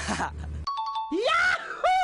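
A short TV transition jingle: a quick cluster of bell-like chime tones, then a voiced 'ooh' sound effect that slides up and then down in pitch, twice.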